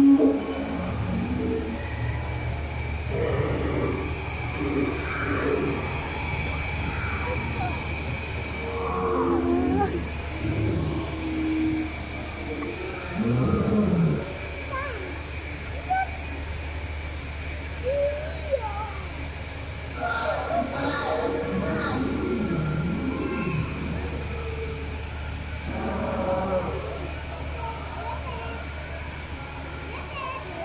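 Recorded dinosaur roars and growls playing from an animatronic dinosaur exhibit over a steady low hum, mixed with visitors' voices. The loudest moment is right at the start, with further louder roars about nine and thirteen seconds in.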